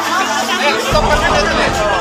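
Chatter of several people talking over one another, with background music underneath.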